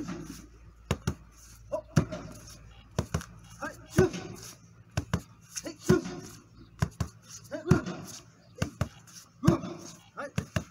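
Knee strikes and kicks slapping into a handheld kick pad, about one a second, the harder strikes each with a short, sharp vocal exhale.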